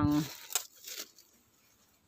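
Two short crinkling rustles of a plastic bag being handled, about half a second and a second in, then quiet.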